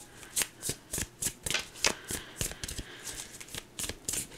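A deck of tarot cards being shuffled by hand: a run of quick, crisp card flicks, irregular, about four a second.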